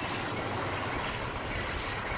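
Train running along the railway track: a steady rumble with a hiss over it.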